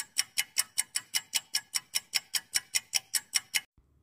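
Ticking-clock sound effect for a quiz countdown timer, even ticks about six a second, stopping shortly before the end.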